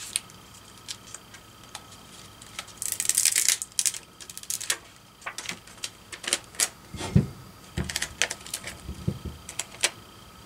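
Handling noise on a paper-covered work table: scattered light clicks and taps as a plastic scraper tool and a glitter tumbler are picked up and set down, with a brief rustle about three seconds in and a couple of soft thumps about seven seconds in.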